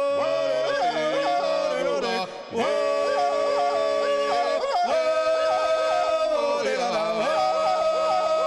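Three male voices singing a Georgian polyphonic folk song unaccompanied, in close harmony: the lower voices hold long notes while the top voice flicks quickly up and down. There is a brief break for breath about two and a half seconds in, then the chord comes back.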